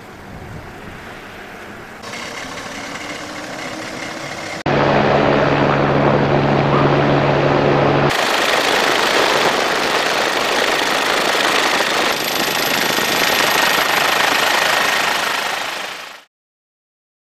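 Helicopter noise, loud and steady, with a fast rhythmic chop. It jumps in level abruptly about five seconds in and shifts again at a cut about eight seconds in. Before that there is quieter engine noise.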